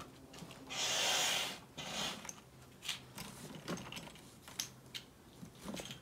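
A hand air pump pushes one stroke of air through its hose into a kayak's small deck-lift chamber: a rush of air about a second in, lasting about a second, and a shorter puff just after. Then faint clicks and rubbing as the plastic hose connector is handled at the valve.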